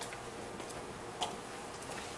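A few light, irregularly spaced clicks of computer mice and keyboards over a steady low room hum, the sharpest about a second in.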